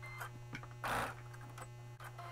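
Quilted fabric handled and positioned under a sewing machine's presser foot: faint ticks and one brief rustle about a second in, over a steady low hum.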